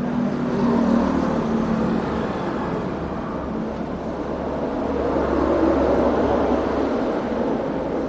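A motor vehicle engine running, its noise swelling gradually to a peak and easing off again over several seconds, over a steady low hum.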